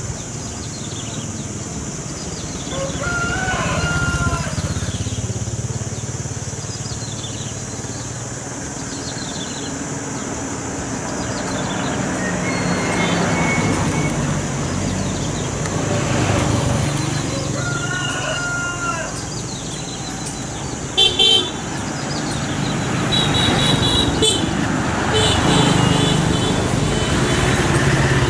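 Street ambience with a steady rumble of passing traffic. A rooster crows twice, early and again past the middle. A vehicle horn gives two short loud toots about three-quarters of the way in, followed by a few more honks.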